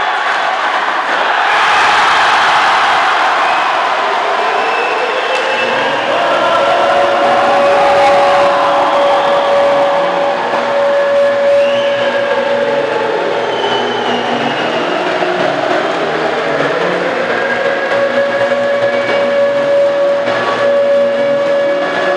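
Arena crowd cheering a goal in an ice hockey game, joined after a few seconds by loud music with a long held tone over a rhythmic lower part, the crowd still audible beneath it.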